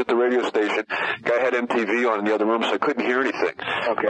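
Speech only: a man talking in a recorded interview conversation, with little low end to the voice.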